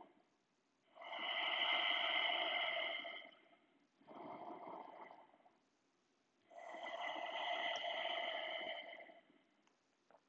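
A person breathing slowly and deeply, with three long audible breaths about a second apart; the middle one is shorter and quieter.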